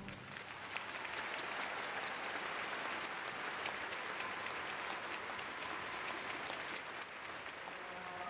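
Arena audience applauding steadily: many hands clapping at once, with no single clap standing out.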